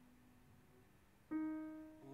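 Fazioli grand piano: the previous note fades away, then about a second and a half in a new chord is struck and rings on, slowly dying.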